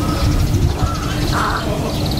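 Outdoor ambience of a low wind rumble on the microphone, with bird calls over it and one louder call about a second and a half in.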